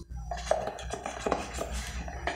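Kitchen handling noises at an aluminium pot: a series of light, irregular clinks and knocks, two of them ringing briefly, over a low steady hum.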